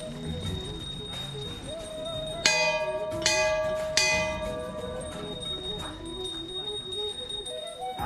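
Hanging metal temple bell rung by hand three times, about three-quarters of a second apart, each strike ringing on, over background music.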